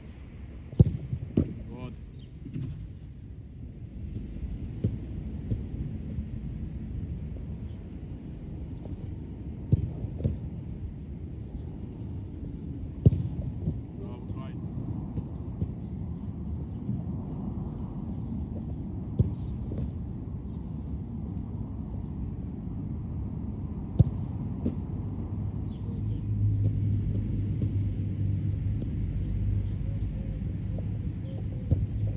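Several sharp thuds of a football being kicked and caught, a few seconds apart, over a steady low rumble. A low steady hum joins near the end.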